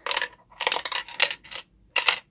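A nickel rattling inside a hollow plastic rainbow-shaped piggy bank as the bank is tilted and turned over. It gives four or five short, sharp clattering bursts.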